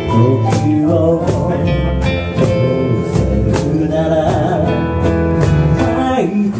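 Live acoustic band music: two acoustic guitars strummed in a steady rhythm over an upright bass, with a singer's voice wavering on held notes about two-thirds of the way through.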